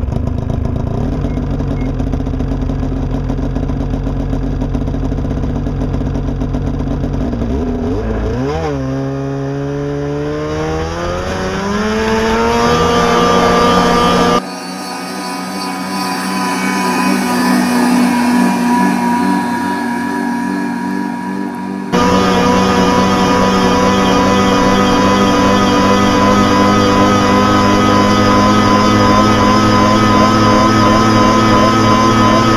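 Snowmobile engine running at a steady pitch, then revving up with a rising whine from about eight seconds in and holding high as the sled skims across the water. The sound changes abruptly twice, around halfway and about two-thirds of the way through.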